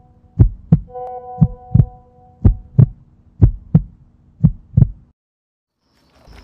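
Heartbeat sound effect: paired low thumps, lub-dub, about once a second over a low steady hum, cutting off abruptly about five seconds in.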